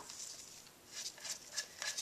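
Faint rubbing with a few light ticks about a second in, as a threaded valve inspection cap is worked loose from a Honda XR70R cylinder head.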